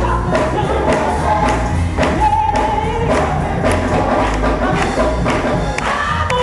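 Gospel choir singing live with instrumental accompaniment and a steady beat of percussive strokes about twice a second.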